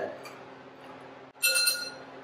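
A glass stirring rod clinks once against glass, a bright ringing ping about one and a half seconds in that dies away within half a second.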